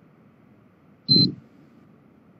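A single short, high beep over a dull low burst, about a second in, against faint steady background noise.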